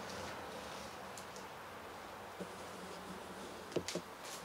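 A faint steady buzz, with a few light knocks near the end.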